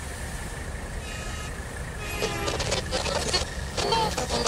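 Street-traffic ambience: a steady low rumble of vehicles, growing busier with sharper sounds from about two seconds in.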